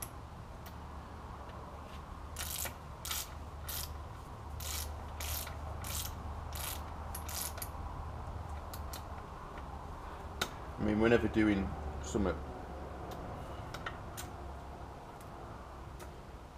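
Ratchet of a torque wrench clicking as it is swung back and forth to run down the oil pump's M8 bolts, about two clicks a second for several seconds, then a few scattered lighter clicks.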